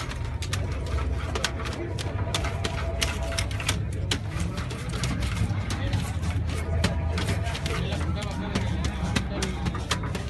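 Metal spatula scraping and tapping on a metal griddle as sugar-coated walnuts are pried loose, giving many irregular sharp clicks and scrapes over a steady low rumble.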